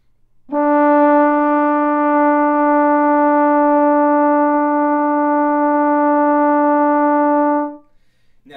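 Trombone holding one long, steady D for about seven seconds. The D is pitched as on a keyboard (equal temperament), as the major third above B-flat, which sits slightly sharp of a pure just-intonation third.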